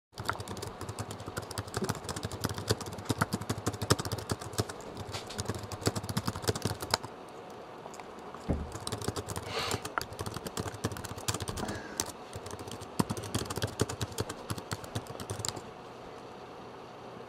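Typing on a computer keyboard: rapid runs of key clicks with a short pause about seven seconds in, stopping just before the end.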